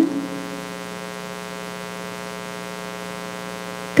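Steady electrical mains hum in the audio feed, buzzy with many evenly spaced overtones, holding at one unchanging level.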